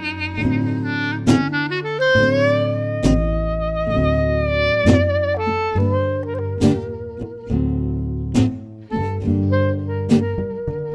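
Clarinet playing a slow jazz melody with vibrato, including one long held note in the middle, over plucked upright bass and acoustic guitar.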